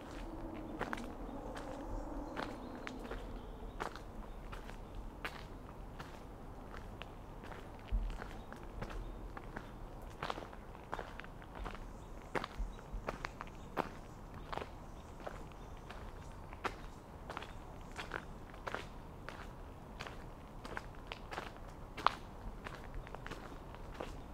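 Footsteps crunching on a gravel trail at a steady walking pace.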